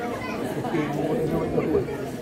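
Indistinct chatter of many voices talking at once in a large hall, with no single voice standing out.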